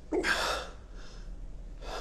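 A person's sharp gasp, with a second breath starting near the end.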